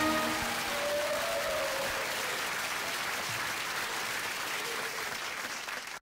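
Applause after a song. The last held note of the backing music dies away in the first moments, and the applause gradually fades.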